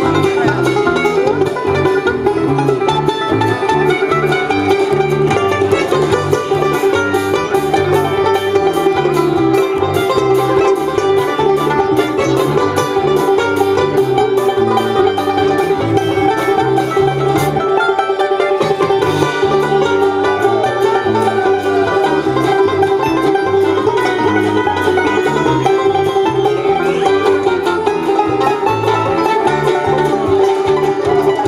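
Live bluegrass band playing an instrumental break, with banjo to the fore over fiddle, guitar, upright bass and a drum kit keeping a fast, steady beat.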